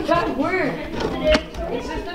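Other people talking in the background, with one sharp tap about two-thirds of the way through.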